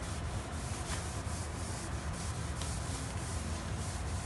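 A hand scrubbing a hard surface to wipe off mildew, rubbing back and forth in quick even strokes at about three a second.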